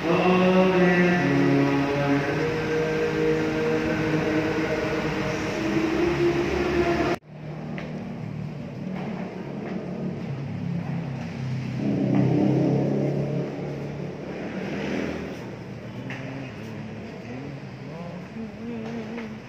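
Group of voices singing a hymn in unison with long held notes. The singing cuts off suddenly about seven seconds in, and fainter, muddier singing follows.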